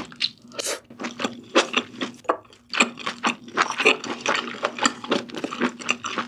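Close-miked chewing of a mouthful of spicy sea snail noodles: a rapid run of short, sharp mouth clicks and smacks, with a short lull about two and a half seconds in.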